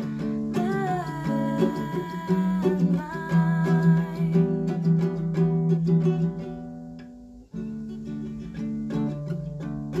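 Ukulele strummed under a woman's singing voice; the singing stops about halfway through while the strumming carries on. The chords die away briefly about seven and a half seconds in, then the strumming starts again.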